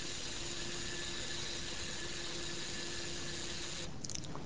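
Faint, steady drone of the small electric motor driving the magnetometer probe carriage along the coil axis, a low hum with a thin higher whine over a steady hiss, stopping abruptly just before the end.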